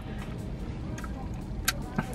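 Low steady rumble of a car's cabin under faint music, with a couple of soft clicks about one and one and a half seconds in.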